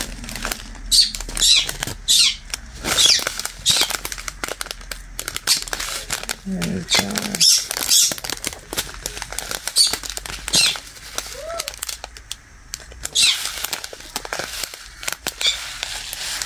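Clear plastic packets of diamond-painting rhinestones being handled and crinkled, with the small stones clicking and shifting inside: many short rustles and clicks throughout.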